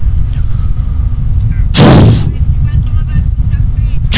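A steady low rumble, with a loud, sudden burst of noise about two seconds in that dies away within half a second.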